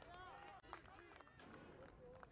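Faint shouts of players on a football pitch, with scattered light taps over a low outdoor background.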